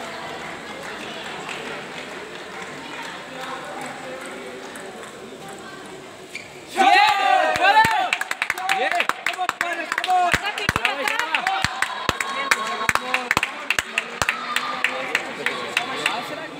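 Table tennis ball ticking sharply off bats and table, irregularly several times a second through the second half, over the murmur of a sports hall. A sudden loud outburst with sliding, squeal-like tones comes just before the ticking begins.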